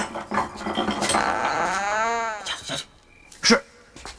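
A person's long wordless vocal sound, rising and then falling in pitch, lasting about a second and a half. A single sharp knock follows a second later and is the loudest moment.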